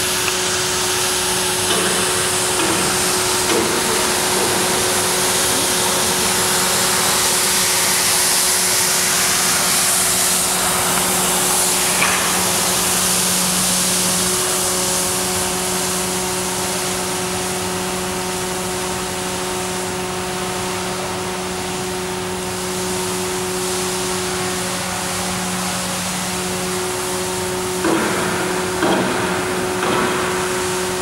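Ride-on floor scrubber running as it scrubs: a steady motor hum under an even hiss, with a few short knocks near the end.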